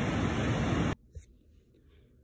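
Steady rushing outdoor background noise that cuts off abruptly about a second in. Near silence follows, with a single faint click.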